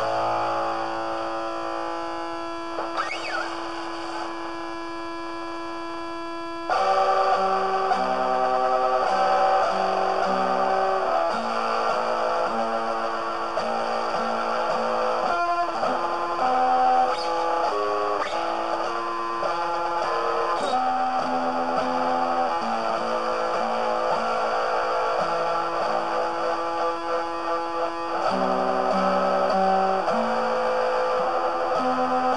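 Instrumental guitar music: a held chord for about the first seven seconds, then it gets louder and moves through a run of changing notes.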